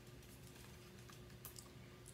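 Near silence with a few faint, light clicks and rustles of a picture book being opened and its pages handled, the clearest about one and a half seconds in, over a low steady room hum.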